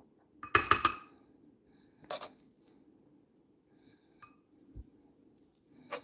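A metal spoon clinking against a glass bowl as cooked buckwheat is spooned in: a quick cluster of ringing clinks about half a second in, another single clink about two seconds in, then a few faint taps.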